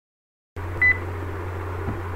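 A short, high electronic beep just under a second in, over a steady low hum of recording background noise that starts abruptly about half a second in.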